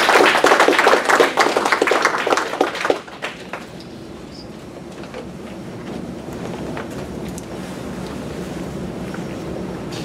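Small audience applauding for about three seconds, the clapping thinning out and stopping. Then a steady, low room noise with a few faint knocks.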